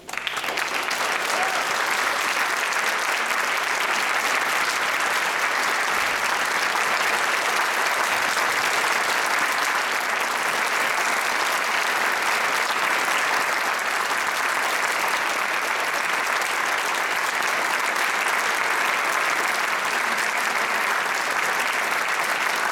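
Audience applause that breaks out suddenly at the end of an orchestral piece and holds steady and dense.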